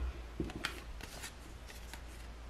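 Round cardboard fortune cards being handled, with a few soft clicks and rustles as they rub and tap against each other.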